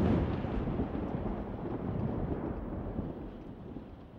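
A deep, dramatic rumble that fades away gradually, like rolling thunder.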